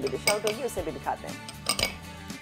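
A utensil clinking against a glass bowl: a few sharp clinks, two of them close together near the end, over background music.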